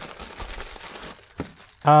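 Plastic poly mailer bag crinkling and rustling as hands dig through it and pull out bagged parts, with one short tap about a second and a half in.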